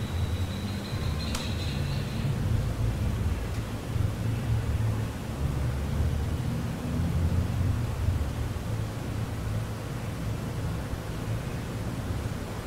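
Steady low background rumble with a faint hiss over it, and a single sharp click about a second in.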